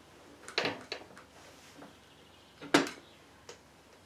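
A few short clicks and knocks of metal tools and engine parts being handled on a workbench, the loudest near the end.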